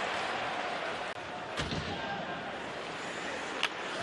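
Ice hockey arena sound: steady crowd noise with a few sharp knocks of sticks and puck.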